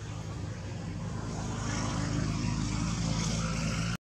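A motor engine droning steadily, growing louder about halfway through as if drawing nearer, then cutting off suddenly near the end.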